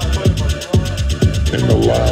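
Progressive electronic dance music played loud over a sound system, with a steady four-on-the-floor kick about two beats a second, quick hi-hat ticks and a pitched synth line coming in near the end.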